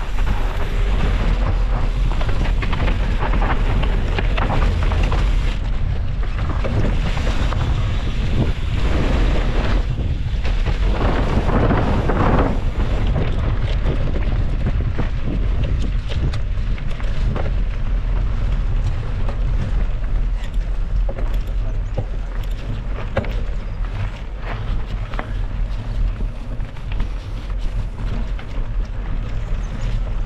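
Mountain bike riding fast over a dry dirt and gravel trail: wind buffets the bike-mounted camera's microphone in a steady low rumble, while the tyres crunch and the bike rattles with many small clicks. The ride gets rougher and louder for a few seconds around the middle.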